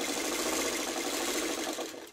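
A vintage black sewing machine running steadily, stitching rapidly through quilting cotton, then stopping near the end.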